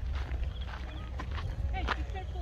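Footsteps on rocky, uneven trail ground, a string of short knocks, with a steady low wind rumble on the microphone and faint voices in the distance.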